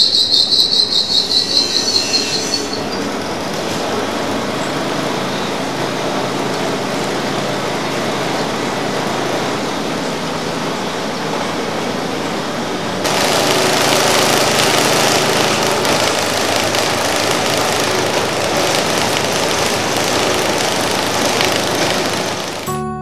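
Belt-driven cotton-fluffing (carding) machine running: it starts with a loud pulsing high squeal for the first two or three seconds, then settles into a steady mechanical whir. About halfway through it grows louder and rougher.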